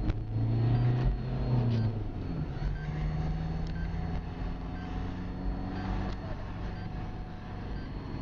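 A motor vehicle's engine running steadily close by, its pitch shifting about two and a half seconds in. A faint short beep repeats about once a second.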